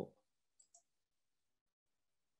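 Near silence with two faint clicks, about half a second and three-quarters of a second in.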